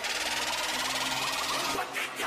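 Logo-intro whoosh sound effect: a dense, steady hissing rush of noise with faint electronic intro music underneath.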